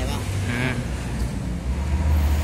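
Large tractor's diesel engine idling, a steady low hum, with a short spoken syllable over it about half a second in.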